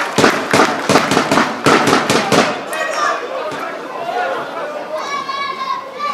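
Scattered applause from a small sports crowd, individual handclaps that die away about two and a half seconds in. Near the end comes a single long shouted call.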